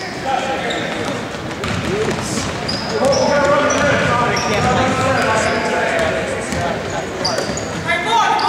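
A basketball being dribbled on a hardwood gym floor, with short, high sneaker squeaks scattered throughout.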